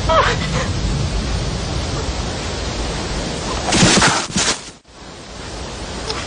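A bear cub's short falling cry near the start over a steady rushing background, then a loud harsh growl about four seconds in that cuts off suddenly.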